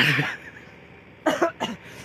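A man coughing twice in quick succession, about a second and a quarter in.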